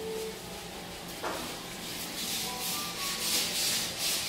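Gritty scuffing in waves over the second half, likely shoes scuffing across a freshly sanded, dusty wooden parquet floor. A single soft knock comes about a second in.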